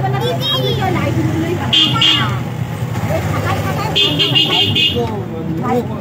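A street with traffic and people talking, under a low steady engine hum. A high-pitched vehicle horn toots briefly about two seconds in, then again in a quick run of beeps lasting about a second near the four-second mark.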